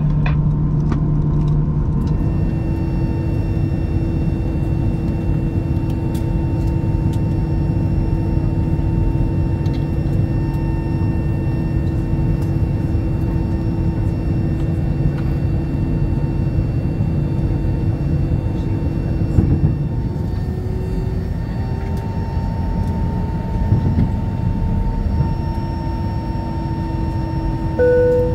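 Airbus A319 cabin noise while taxiing to the gate: a steady low rumble of idling jet engines and air-conditioning, with several steady hum tones that shift slightly about two-thirds of the way through. A brief tone sounds at the very end.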